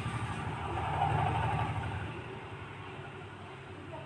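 A low rumbling background noise with no speech. It swells about a second in and then slowly fades.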